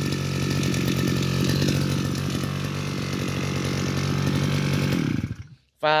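Hitachi CG33 brush cutter's 33 cc two-stroke engine running steadily, then cut off about five seconds in and dying away quickly.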